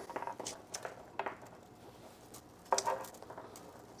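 Faint, scattered rustles and small ticks of dry birch twigs and thin aluminium wire being handled as a wire strand threaded with sea glass is worked through the branches, with a slightly louder cluster about three seconds in.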